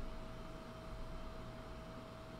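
Quiet room tone: a faint steady hiss with a low hum and one thin, steady tone underneath.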